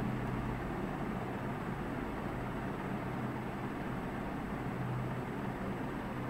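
Steady background hiss with a constant low hum, unchanging throughout: room noise picked up by the microphone.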